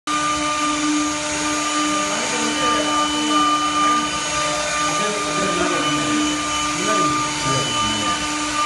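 Double-spindle CNC router running, its spindle motors giving a steady, even whine made of several fixed tones over a motor hiss.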